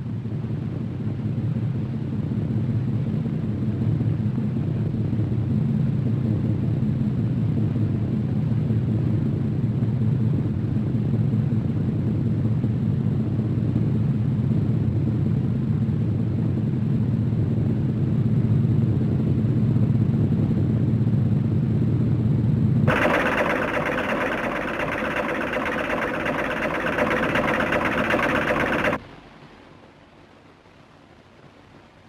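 Zeppelin airship engines droning, a low steady rumble. About three-quarters of the way through it cuts suddenly to a brighter, hissier steady sound, which stops abruptly near the end.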